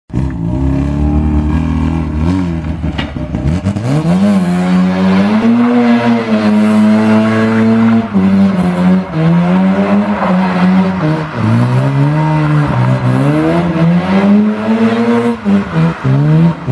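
Bridgeported Mazda 13B rotary engine in a Mazda 626 revving hard through a skid: the revs are held high, drop and climb again several times, over steady tyre screech.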